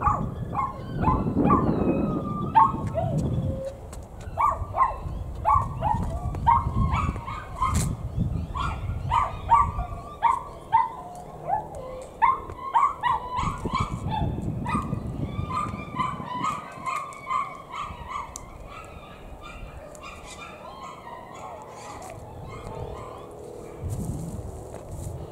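A dog barking repeatedly in quick, short yaps, several a second, thinning out and growing fainter over the last third. Low rumbling noise on the microphone comes and goes beneath it.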